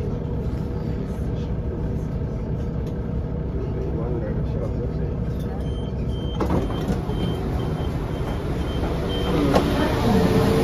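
Inside a Class 172 diesel multiple unit standing at a station platform: a steady low rumble from the train. About halfway through, a run of short high beeps sounds for a few seconds as the doors open, with voices of passengers getting off.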